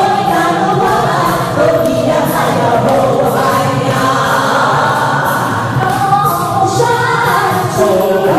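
A group of women singing a song together into handheld microphones, with no break.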